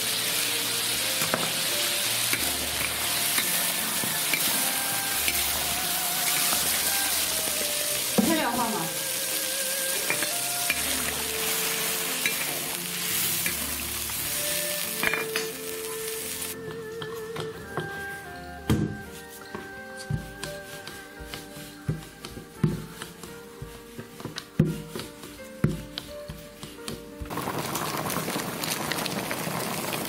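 Chicken and pork rib pieces frying with a loud sizzle in a large wok, stirred as bean paste goes in. About halfway through the sizzle drops away as the pieces braise in liquid, leaving scattered pops and knocks, and a steady hiss returns near the end.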